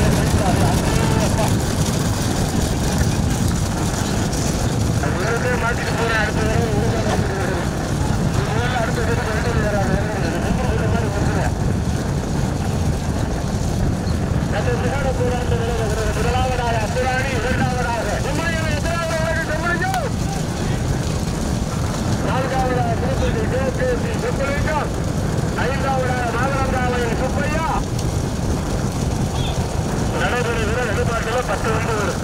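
Steady rumble of a moving vehicle's engine and wind on the microphone, with a man's voice calling out in long, wavering phrases over it, pausing between them.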